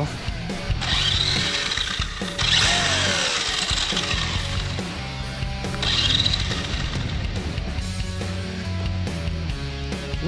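Background music with a steady bass line runs throughout. Over it come bursts of high electric whirring, about a second in and again around six seconds, from the RC truck's motor spinning its drivetrain and wheels while the truck is held upside down.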